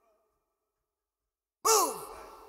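Isolated male lead vocal on a separated stem: silence, then about a second and a half in a short, sharp vocal exclamation that drops steeply in pitch and trails off in an echoing decay.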